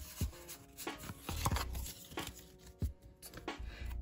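A stack of Pokémon trading cards handled in the hands, the cards sliding against one another with a few short, sharp clicks, over faint background music.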